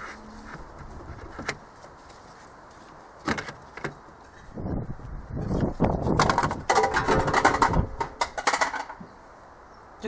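Gloved hands wrestling a plastic boost pipe and its ducting into place in a van's engine bay: scattered knocks and scrapes of plastic at first, then a dense run of clattering, scraping and creaking through the second half.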